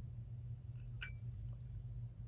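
A few faint small clicks and a short squeak about a second in, from a syringe being worked to draw water through a fountain pen converter held in a jar of water, over a steady low hum.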